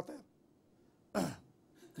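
A person clearing their throat once, short, a little over a second in, in a pause between speech.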